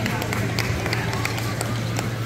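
Reverberant sports-hall ambience of power wheelchair soccer play: distant voices and scattered sharp clicks and squeaks on the hardwood court over a steady low hum.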